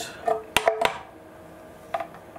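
Kelly KBS72151E motor controller's finned aluminium case knocking against the scooter's metal deck as it is pushed into a tight space: three quick metallic knocks with a short ring about half a second in, and one more knock near the end.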